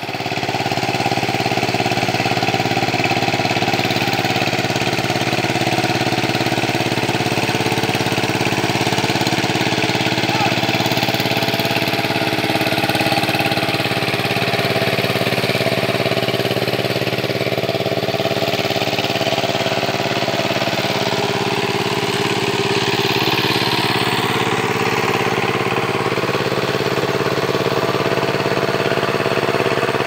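Walk-behind power tiller's engine running steadily as the machine works a flooded paddy field, puddling the soil for planting.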